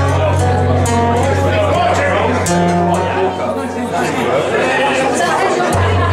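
Solo acoustic guitar played live in a percussive fingerstyle: held low bass notes that change twice, picked melody notes above, and regular sharp slaps on the guitar body.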